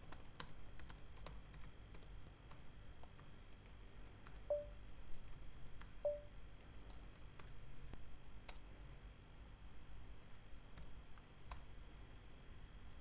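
Faint, irregular keystrokes on a computer keyboard as a terminal command is typed and entered, with two short faint tones about four and a half and six seconds in.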